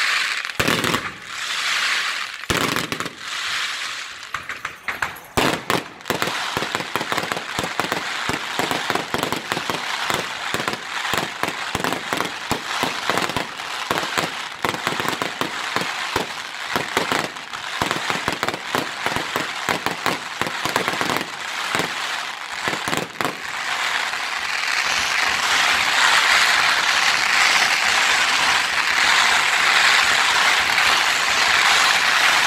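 Aerial fireworks going off: a rapid, irregular string of bangs and crackles. About three-quarters of the way through it thickens into a louder, continuous crackling.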